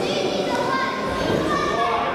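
Children's voices shouting and calling out over a general hubbub of spectators in a large gym hall.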